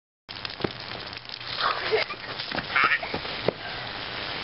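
Outdoor sounds: a steady hiss with scattered sharp knocks and two short cries, about a second and a half and nearly three seconds in.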